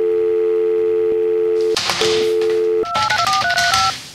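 Landline telephone dial tone, a steady two-note hum with a brief break about two seconds in, then a quick run of about six touch-tone keypad beeps as a number is dialed near the end.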